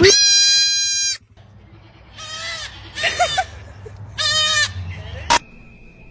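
A young goat lets out a loud, long bleat lasting about a second, followed by three shorter calls. A sharp click comes near the end.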